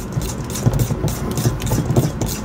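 A spoon whipping waffle batter in a stainless steel mixing bowl: quick, rhythmic strokes, the spoon knocking and scraping against the metal.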